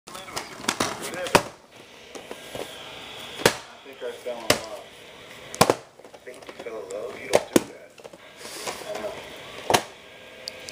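Plastic VHS cassettes and cases clacking and knocking as they are picked up, shuffled and set down, about ten sharp knocks every second or two.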